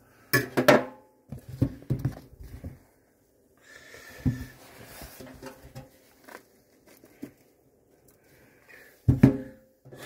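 A metal fork clinking, knocking and scraping in a foil-lined mug of hot baking-soda solution, in irregular sharp knocks with brief ringing. The loudest knocks come about half a second in and just before the end.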